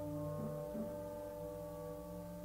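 Symphony orchestra holding a quiet sustained chord, with a few low notes shifting beneath it about half a second in.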